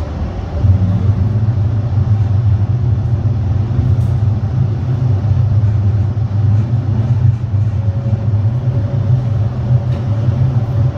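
Rome Metro Line C train running through a tunnel, heard from inside the car: a steady low rumble that grows louder about half a second in. A faint steady tone comes in near the end.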